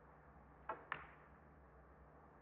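Two sharp clicks of snooker balls about a fifth of a second apart: the cue tip striking the cue ball, then the cue ball hitting a red.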